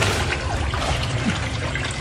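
Water trickling and splashing as a green mesh net holding fish is lifted out of a tank, draining, and lowered into a glass tank.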